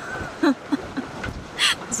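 A woman laughing in a few short bursts, ending in a breathy outburst near the end.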